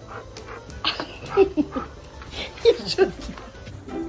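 Dogs playing tug-of-war with a rope toy, giving a few short cries that fall in pitch, in clusters about a second in and again near three seconds.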